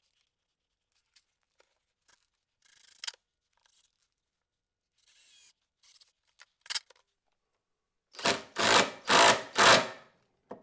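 Faint handling clicks and rustles, then a cordless drill run in four short, loud bursts into holes in the base of a wooden newel post near the end, working the lag-screw holes through the post into the stair stringer.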